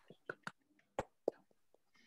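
A few scattered hand claps coming through a video call, about five short separate claps with silence between them.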